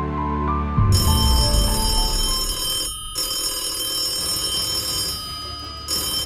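Desk telephone bell ringing, starting suddenly about a second in, with a short break about three seconds in, over background music. A heavy low hit in the music comes just before the ringing starts.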